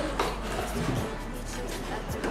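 Soft background music playing, with a brief scrape of cardboard near the start as a glass bottle is drawn out of its box.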